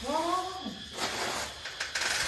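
A cat meowing: one drawn-out call that falls in pitch, followed by a few light clicks near the end.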